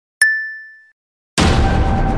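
A single bright notification-bell ding sound effect, struck once and ringing out as it fades over well under a second. About a second later, background music cuts in abruptly.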